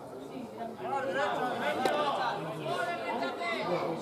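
Several voices talking and calling out over one another, unintelligible chatter, with one sharp click about two seconds in.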